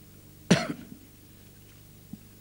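A man coughs once, sharply, close to a microphone, about half a second in.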